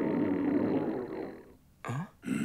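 Cartoon stomach-growl sound effect: a long gurgling rumble of a hungry stomach, with a wavering pitch, fading out about a second and a half in.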